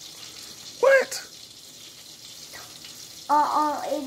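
A steady hiss, over which a young child makes one short, high-pitched vocal sound about a second in, then starts talking near the end.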